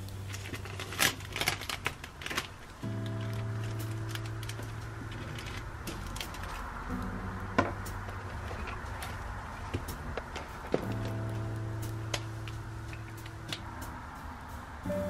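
Background music of held chords over a low bass note, changing about every four seconds. Over it, the crinkle and tapping of a clear plastic sleeve and paper sticker sheets being handled on a desk, most about one to two and a half seconds in, with a few single sharp taps later.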